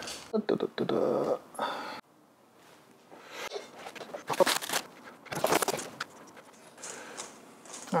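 Rustling and knocking of studio gear being handled as a light and a card flag are positioned. The sound cuts to dead silence for about a second about two seconds in, then the knocks and rustles resume, sparser and quieter.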